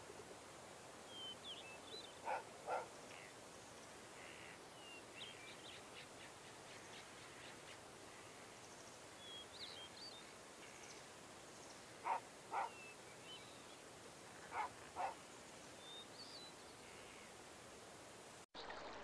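Faint ambient birdsong, with scattered short high chirps, and three pairs of louder short animal calls spread through the stretch, each pair about half a second apart.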